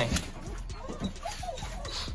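Pit bull puppy's claws tapping and scrabbling on a plastic table top, a few light irregular clicks.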